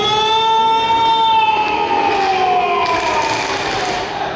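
A single long, loud horn-like call, held for nearly four seconds and sinking slowly in pitch in its second half, as a yosakoi dance team's performance begins.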